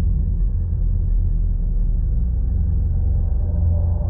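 A loud, steady, deep rumble that stays even throughout, with only a faint hiss above it.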